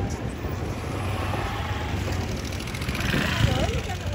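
A steady low mechanical hum at a riverside, with people chatting in the background; the voices come up a little about three seconds in.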